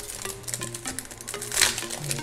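Foil booster-pack wrapper crinkling and rustling in the hands, with a louder rustle about one and a half seconds in, over soft background music.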